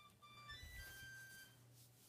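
Faint electronic beeping tune from a small sound chip: a quick run of short, high notes at changing pitches lasting about a second and a half, triggered as the Play-Doh bunny is pressed.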